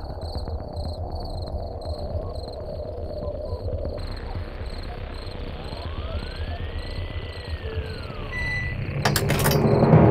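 Night ambience on a film soundtrack: crickets chirping in an even rhythm of about two chirps a second over a steady low rumble. A slow tone rises and falls in the middle. About a second before the end, a loud swell of noise with sharp clicks builds up.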